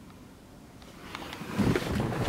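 Quiet at first, then about one and a half seconds in the 1993 Acura NSX's V6 engine starts and runs with a low rumble through its Magnaflow exhaust.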